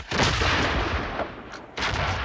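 Battle sound effect of massed gunfire: a sudden loud volley that rolls on and fades, then a second volley near the end.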